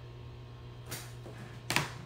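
A pause with a steady low electrical hum, broken by two brief soft noises, one about a second in and a slightly louder one near the end.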